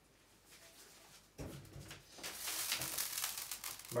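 A knock about a second and a half in, then a frying pan's hot oil crackling and sizzling, growing louder toward the end.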